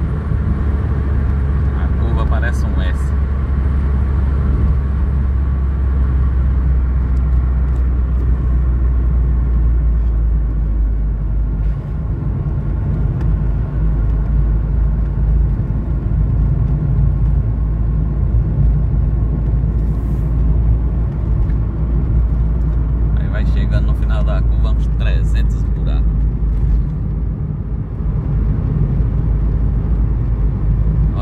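Car running along a paved road, heard from inside the cabin: a steady low engine and tyre drone. The drone's lowest note changes about ten seconds in.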